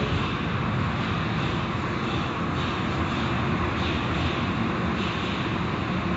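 Car wash machinery running: a loud, steady roar of noise with no breaks.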